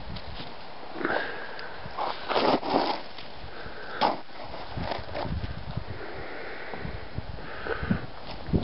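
A Jack Russell–rat terrier mix sniffing hard with her nose pushed into the snow, in several short bursts, the loudest cluster a little after two seconds in.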